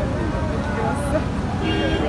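Indistinct voices from a small group over a steady low background rumble. A steady ringing tone comes in near the end.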